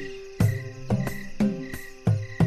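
Background score music: drum hits about twice a second, each with a low falling pitch, over a held tone. A high chirping like crickets pulses in time with the hits.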